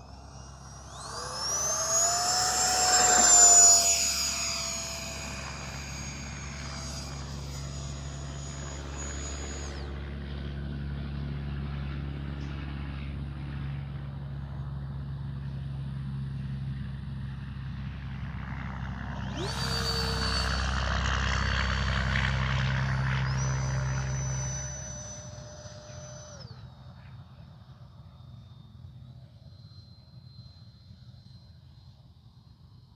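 E-flite Habu SS's 70 mm electric ducted fan on a 6S battery spooling up, with a high whine rising in pitch about a second in and loudest around three to four seconds, then holding steady until it drops away near ten seconds. A second throttle-up about twenty seconds in, its whine stepping higher before cutting off suddenly near twenty-six seconds.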